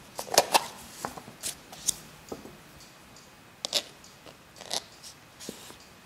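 A series of short, irregular scrapes and clicks from a table knife scooping nata (cream) out of a plastic tub and spreading it on a crisp waffle.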